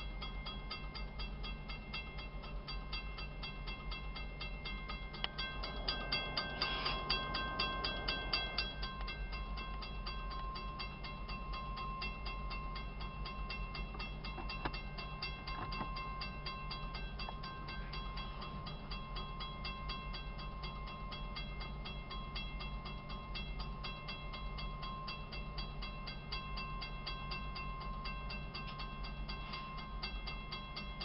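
Diesel locomotives idling with a steady low rumble, a rapid even ticking and a steady high tone over it. A louder rush of noise comes about seven seconds in.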